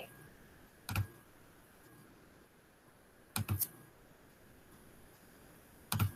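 A few sharp computer-keyboard clicks over faint background hiss: one about a second in, two close together about three and a half seconds in, and one at the very end.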